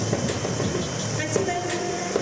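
Music playing over a ballpark's public-address speakers, a stepping melody with a dense, echoing low rumble of stadium noise under it.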